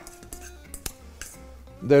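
Soft background music with a plucked guitar, with a few light clicks of a metal fork against a stainless steel bowl as egg yolks are mashed.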